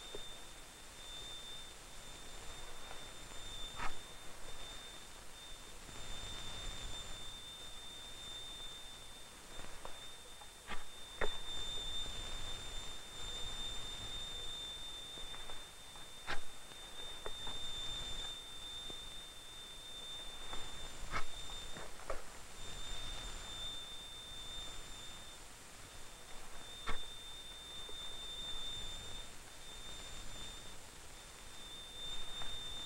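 A steady high oscillator tone of a little over 3,000 cycles per second, swelling and fading as the microphone probe is slid through the nodes and antinodes of a standing sound wave. Now and then a light knock is heard as node positions are marked on the bar. Old film hiss runs underneath.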